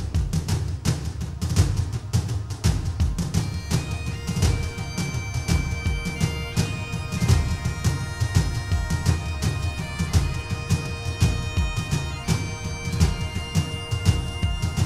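Pipe-and-drum music: a steady drum beat, with a bagpipe melody of held notes coming in about three and a half seconds in.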